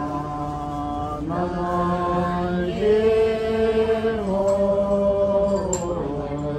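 Voices chanting a prayer in long, held notes, stepping to a new pitch every second or so.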